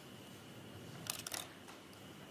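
A quick cluster of small sharp clicks and taps about a second in, from plastic polarizer pieces being handled and slid over a phone's glass screen.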